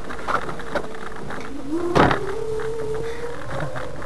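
Small electric car's drive motor whining at a steady pitch, with a second tone sliding up in pitch about two seconds in as it draws more power. A single sharp knock comes at the same moment, as the car jolts over the rough ice.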